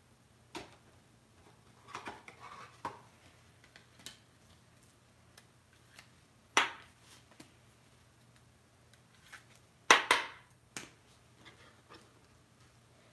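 Scattered short clicks and knocks of small objects being handled on a tabletop. There is a sharp click about six and a half seconds in, and the loudest pair of knocks comes near the end.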